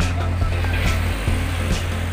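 Background music with a steady beat and a deep bass line that shifts note in steps.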